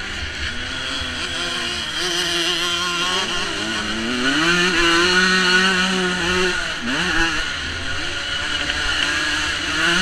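A 125cc twin-shock motocross bike's two-stroke engine at racing speed. It revs up about four seconds in and holds high, dips and recovers quickly about seven seconds in, then builds again near the end.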